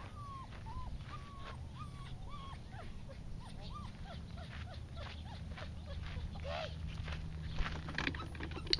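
Norwegian elkhound whining: a string of short, high, rising-and-falling whines, about two a second, over a steady low rumble.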